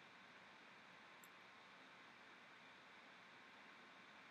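Near silence: a faint steady hiss of the recording, with one faint short click about a second in.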